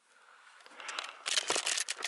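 Handling noise from a hand-held camera being moved: a run of soft rustles and small knocks that starts about half a second in and builds.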